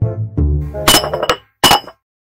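Background music, cut into about a second in by a sudden crash with ringing clinks like breaking glass, struck three times in quick succession, then an abrupt cut to silence.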